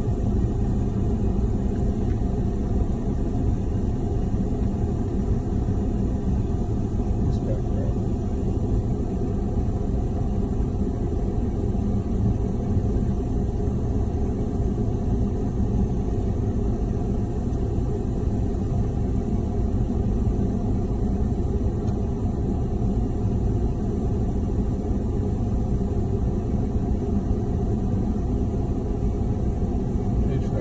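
Steady low rumble of a car idling in park, with a faint steady hum under it.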